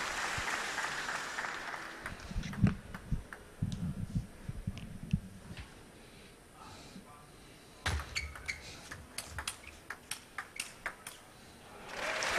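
Applause dying away, then a table tennis rally: a quick run of sharp clicks as the ball strikes the rackets and the table, a dozen or more over about three seconds, starting some eight seconds in.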